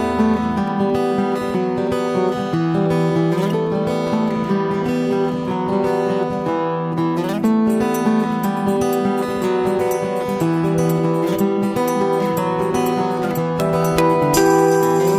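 Cutaway steel-string acoustic guitar playing an instrumental passage, plucked notes and chords ringing into each other at a steady level.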